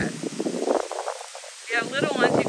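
Splash pad fountains spraying water, heard as a steady rushing hiss. A voice comes in near the end.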